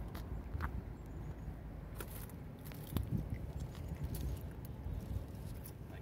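A person chewing blackberries with scattered soft clicks and leaf rustling from picking among bramble leaves, over a low steady rumble.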